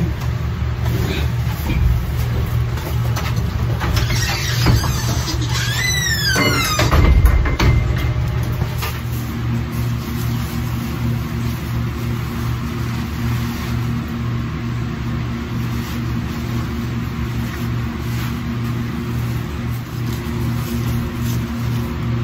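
Steady low hum of a barn fan running, with a brief high cry that rises and falls about six to seven seconds in.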